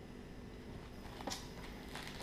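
Faint handling sounds of a first aid pouch and its packets: light rustling and a soft tick about a second and a quarter in, over low room hum.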